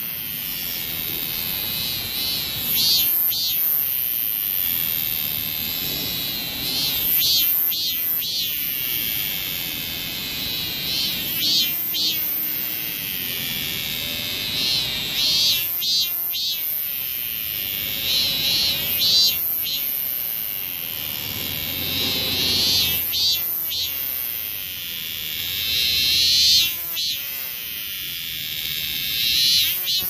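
A cicada singing: a continuous high, buzzing call that swells louder in a repeated phrase about every four seconds.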